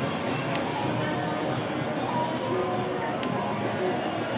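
Casino slot-machine din: a steady wash of overlapping electronic machine tones and jingles, with a few sharp clicks as a three-reel slot machine spins.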